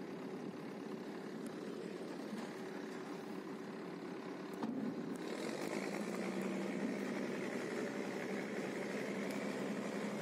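Vityaz DT-30's 12-cylinder multi-fuel engine running steadily, heard from inside the driver's cab. A click comes about halfway through, and after it the sound gets a little louder, with a steady low hum.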